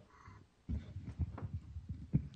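Muffled low thumps and rustling picked up by a meeting-room microphone, starting about two-thirds of a second in, typical of someone handling or settling in at the microphone before speaking.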